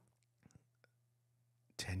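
Near silence in a pause in conversation, with a few faint small clicks; a man starts speaking near the end.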